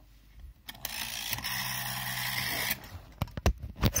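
Handling noise as the recording device is gripped and picked up: a steady rubbing whirr for about two seconds, then a quick run of small knocks and clicks near the end.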